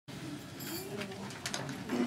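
Low, indistinct voices murmuring in a room, with no clear words.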